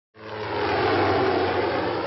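Military helicopter engine and rotor noise: a steady rushing sound with a low hum underneath, fading in at the start.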